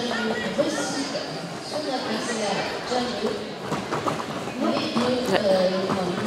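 Indistinct background voices in a sports hall, with scattered clacks from quad roller skates on the wooden floor.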